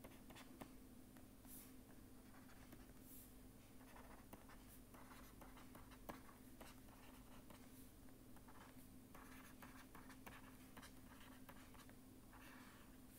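Faint scratching and tapping of a stylus writing on a pen tablet, in short irregular strokes, over a steady low hum.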